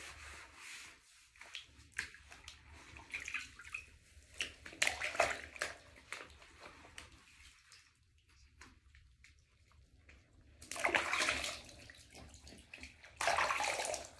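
Bath water sloshing and splashing as a person washes in a filled bathtub, scooping water over the body and face with the hands. Irregular splashes, the loudest about five seconds in, around eleven seconds, and near the end.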